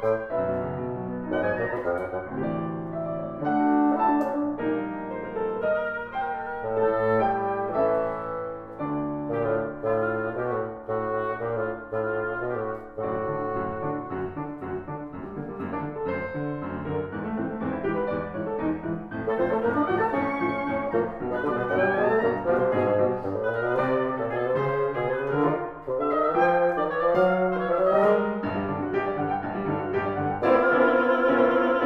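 Live chamber trio of grand piano, bassoon and oboe playing together, with the piano's moving notes under the two double reeds' melodic lines.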